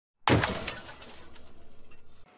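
Breaking-glass sound effect for a channel logo intro: a sudden crash with a scatter of tinkling fragments, fading over about a second into a lower tail.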